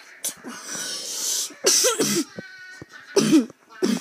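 A person coughing in harsh, voiced bursts: a long hissing breath first, then one coughing fit a bit under two seconds in and two more short ones near the end.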